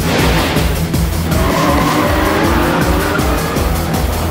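Rally car engine revving with tyres squealing as it corners, a rising squeal from about a second in, over background music with a steady low beat.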